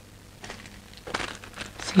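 Packaging of a small perfume sample crinkling and crackling as it is handled. The irregular crackles start about a second in.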